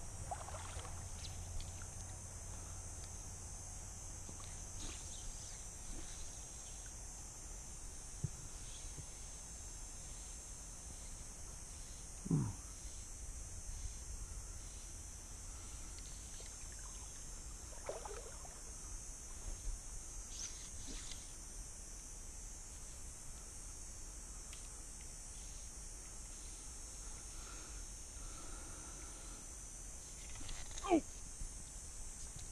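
Riverside ambience: a steady high-pitched insect buzz over a low rumble, with a few brief faint sounds about twelve and eighteen seconds in.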